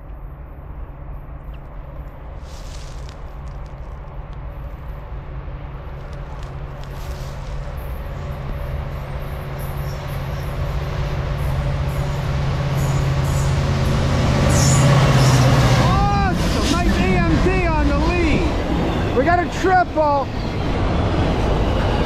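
Diesel locomotive of a Norfolk Southern intermodal freight train approaching, its steady engine rumble growing louder to a peak about two-thirds of the way in as it passes. Double-stack container cars then roll past with a heavy rumble.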